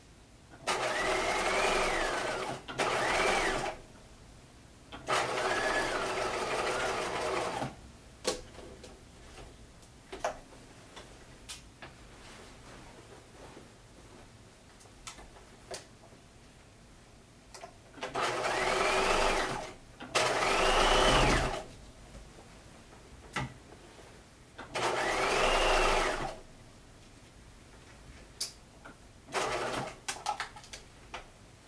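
Bernina sewing machine stitching through denim in several short runs of one to three seconds, its motor whine rising in pitch as it speeds up and falling as it slows. A long pause comes in the middle, with small clicks and fabric handling in the gaps between runs.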